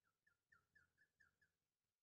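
Near silence, with faint squeaks of a felt-tip marker drawing quick hatch strokes on a glass writing board: about seven short, slightly falling squeaks in an even row over the first second and a half.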